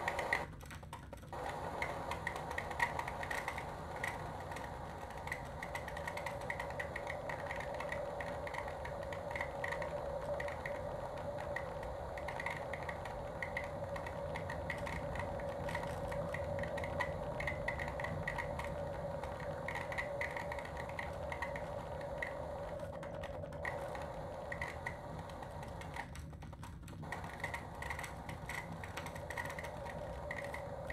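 Live electronic noise improvisation from home-made electronic instruments and software: a steady droning tone under a rapid, irregular flutter of clicks and a low hum. The texture thins out briefly about a second in and twice more near the end.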